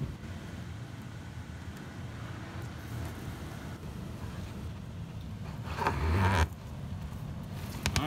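Steady low hum of the Rheem furnace's blower running while the air-conditioning system cools, with a louder burst of noise about six seconds in.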